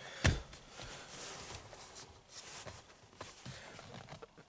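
One sharp thump about a quarter second in as a hand strikes a car's steering-wheel airbag module to seat it in the hub, followed by faint handling noise.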